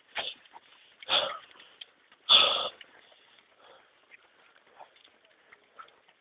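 Heavy breathing of a runner close to the microphone: three loud breaths about a second apart, the third the loudest, then only faint rustling.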